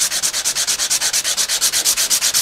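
A small washer being rubbed back and forth on a sheet of sandpaper laid flat on a table, in quick, even gritty strokes about eight a second, thinning the washer down.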